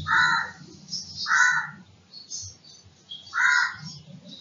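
Bird calls: three loud calls about a second apart, each lasting about half a second, over fainter high chirping.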